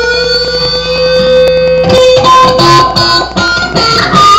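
Solid-body electric guitar played lead through an amp: one long sustained note, bent slightly upward and held for about two seconds, then a run of shorter, higher notes.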